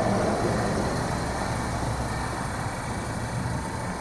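A vehicle engine idling with a steady low sound and no changes in speed.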